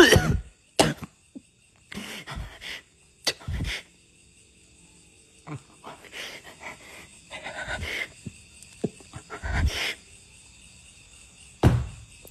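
A man breathing heavily and unevenly in separate gasps, with a few short clicks and rustles in between.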